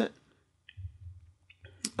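A few faint, short clicks in a pause between spoken words: one about two-thirds of a second in, a small cluster around a second and a half in, and a sharper one just before the voice resumes.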